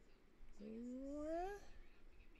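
A single drawn-out, voice-like call that rises steadily in pitch for about a second, starting about half a second in and breaking off sharply.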